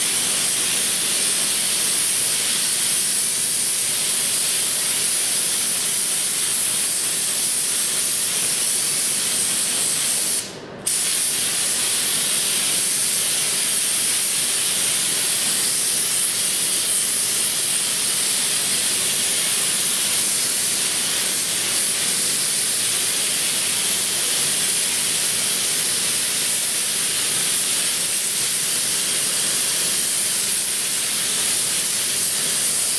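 Air-driven gravity-feed spray gun spraying primer: a steady, loud high hiss of atomising air that stops for about a second about ten seconds in, then carries on.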